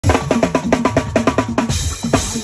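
Acoustic drum kit played with sticks in a fast Fuji-style pattern: quick strokes on ringing toms and snare over bass drum, about seven strokes a second, breaking off shortly before the end.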